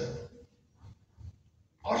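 A man preaching in Armenian, his sentence trailing off, then a pause of about a second holding only two faint, short, low sounds, before he speaks again near the end.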